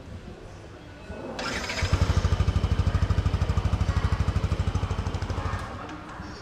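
The old-model Yamaha NMax 155 scooter's single-cylinder engine is started on its conventional electric starter, without the Smart Motor Generator, about a second and a half in. It then idles with a fast, even beat before dying away near the end.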